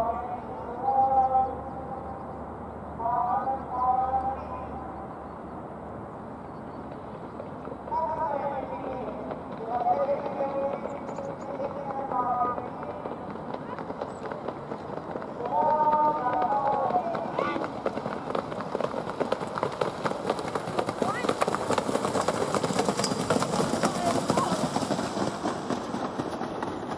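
Harness-racing trotters and their sulkies going by close, a fast, dense clatter of hooves and wheels that takes over in the second half. Before that, short bursts of a man's voice come several times over a steady outdoor noise.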